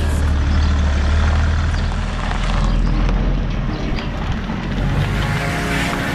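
A car engine running steadily at low revs, a deep rumble that eases off about halfway through, with background music.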